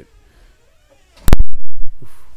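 Loud crackle over the studio's sound system as a phone call is patched in: a sharp pop about a second in, then half a second of loud low rumbling static.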